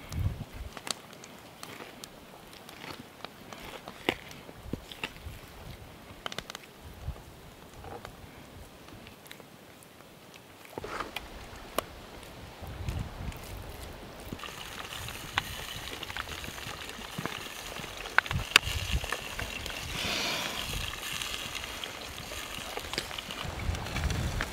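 Quiet sounds of raw bear meat being butchered with a knife on a wooden log: scattered taps and knocks of the blade and meat on the wood, and pieces set down in cast-iron cookware. A steady outdoor hiss comes in about halfway through.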